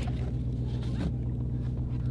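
Supercharged Hemi V8 of a Dodge Challenger SRT Demon 170 idling steadily, heard from inside the cabin as an even, low rumble.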